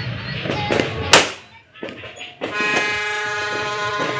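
A firecracker goes off with one sharp, loud bang about a second in, over the crackle of New Year fireworks. A little past halfway a horn starts a long, steady blast.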